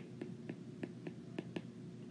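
Stylus tip ticking on an iPad's glass screen while handwriting: a series of faint, light ticks, about four a second, irregularly spaced.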